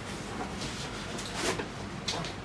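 Faint handling noise of a polystyrene foam packing insert being pulled out of a cardboard box, with light scuffs and one louder brief scrape about one and a half seconds in.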